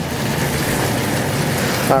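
Mushroom sauce simmering and sizzling in a wide pan on an electric stove while a whisk stirs it, as a starch slurry thickens it: a steady hiss.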